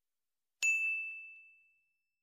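Notification-bell sound effect: a single bright, high ding about half a second in, ringing out and fading over about a second.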